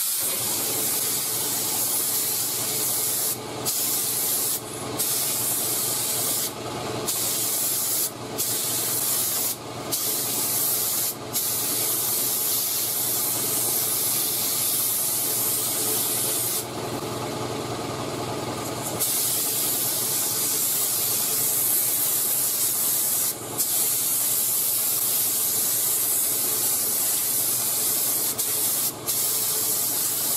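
Compressed-air spray gun (3M Performance, gravity-feed) hissing steadily as it sprays clear coat at low pressure, cutting off briefly about eight times as the trigger is released between passes. For about two seconds past the middle its hiss turns duller.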